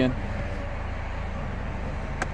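Power convertible soft top of a 2018 Chevrolet Camaro running as it closes, a steady low motor hum.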